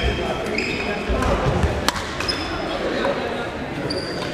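Badminton play on a wooden sports-hall floor: shoes squeak in short high chirps four times, and a racket strikes the shuttlecock with a single sharp crack about two seconds in, over echoing background chatter and footfalls in the hall.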